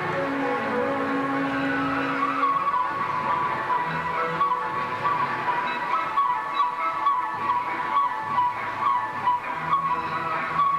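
Music accompanying a mass fan dance: a steady melody over a held low note, turning more rhythmic and pulsing from about six seconds in.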